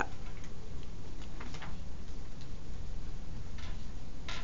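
Pen writing on paper: a few short, irregularly spaced scratches and taps as numbers are written, an arrow is drawn and a fraction is circled and crossed out.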